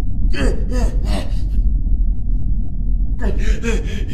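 A person gasping in short, breathy voiced bursts, several in quick succession in the first second and a half, then again near the end, over a steady low rumble.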